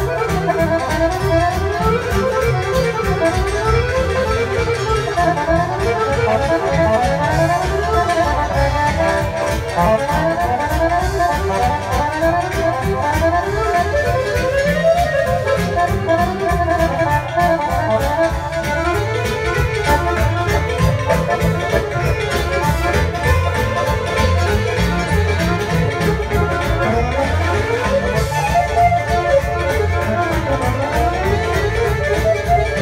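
Balkan folk band playing live, led by piano accordion in fast, ornamented runs that sweep up and down, over a continuous bass and rhythm accompaniment.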